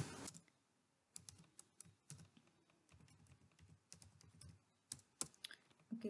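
Faint, irregular keystrokes on a computer keyboard as a short name is typed: a dozen or so soft clicks, bunched in small groups with pauses between.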